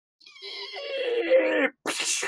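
A long creak, like a heavy hinged lid swinging shut, growing louder for about a second and a half. A sudden crash follows near the end.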